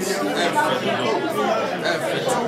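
Crowd chatter: several people talking at once, their voices overlapping.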